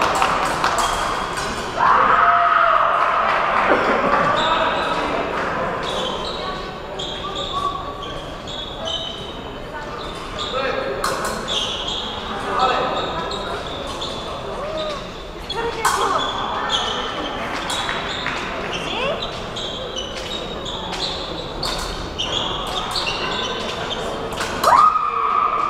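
Épée fencers' footwork on the piste: scattered thumps and stamps of advancing and retreating feet, with sharp clicks and short ringing tones throughout, in a large hall where people are talking.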